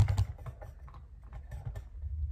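Camera handling noise: irregular clicks and taps over low thumps as the phone is moved and set down on the tile floor, with the loudest knock at the start.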